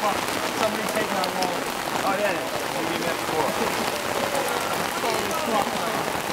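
Heavy rain falling on wet pavement, a steady hiss, with voices talking in the background.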